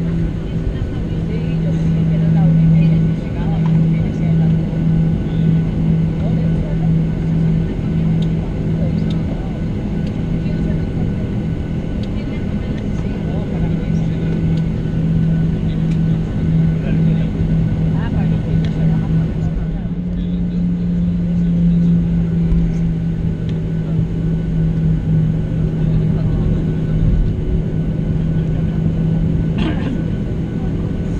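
Inside the cabin of a Boeing 737-700 taxiing after landing: steady drone of the CFM56 engines at taxi idle, with a constant low hum and rumble.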